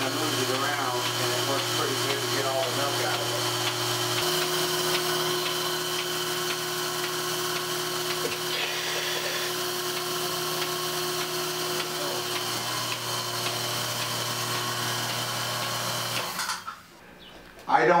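Bucket milking machine running steadily while it milks a cow: a constant motor hum and hiss from the vacuum system. It steps in pitch about four seconds in and drops away near the end.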